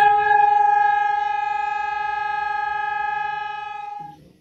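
Civil-defence air-raid siren sounding one steady, held tone. It is the warning to go down to the bunker at once.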